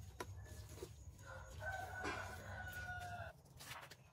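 A rooster crowing once in the background, one long held call of about two seconds starting about a second in. A few light knocks from plastic bottle moulds being handled come just before.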